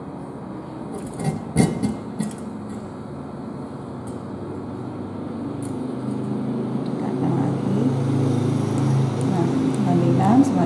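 A sharp knock about one and a half seconds in, as the tabletop apparatus is handled. Then a steady low hum that grows louder through the second half.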